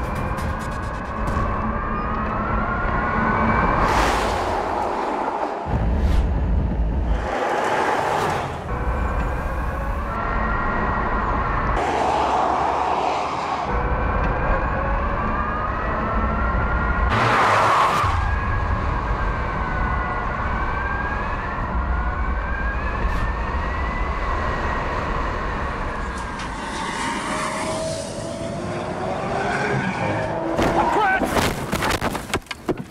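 Rimac Concept One's four-motor electric drivetrain whining at speed, a high pitch that rises and falls again and again as the car accelerates and slows between corners. Several brief loud rushes of noise come in among the whine.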